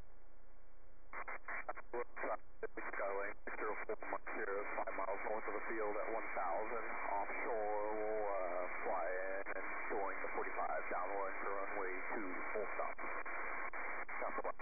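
A person talking over a radio link, the voice thin and narrow-band, starting about a second in and running on for about thirteen seconds.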